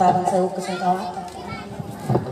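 Voices of people talking, with children's voices among them.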